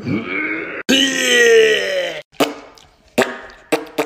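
A person groaning: a short falling groan, then a longer one that wavers in pitch for over a second. A few sharp knocks follow.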